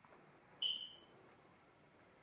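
A single short, high-pitched electronic-sounding chirp about half a second in, starting suddenly and fading away within about half a second.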